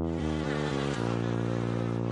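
Cartoon sound effect of flies buzzing, a steady buzz with a short run of falling notes over it in the first second.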